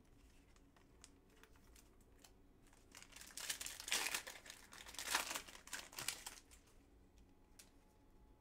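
A trading card pack's foil wrapper being crinkled and torn open, crackling for a few seconds in the middle, followed by a few faint clicks of cards being handled.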